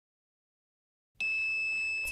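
Toy alarm kit's electronic siren sounding a steady high-pitched tone. It starts abruptly about a second in, as the kit's motor spins the siren top.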